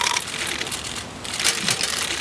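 Short, irregular bursts of rapid, crisp clicking.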